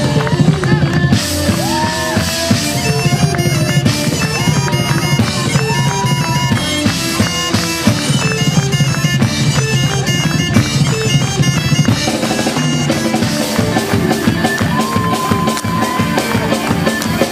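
Live Celtic rock instrumental: bagpipes play a fast melody over electric guitars, bass and a drum kit.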